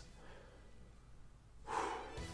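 Near silence, then near the end a man lets out a sigh, one breathy exhale through pursed lips, in disappointment at a plain card.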